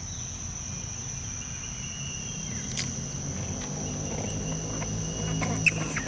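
A steady, high-pitched insect drone runs throughout over a low background hum. In the second half there are a few sharp clicks and some rustling, the loudest click just before the end.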